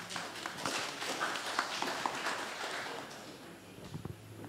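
Light, scattered applause from a seated audience, dying away about three seconds in.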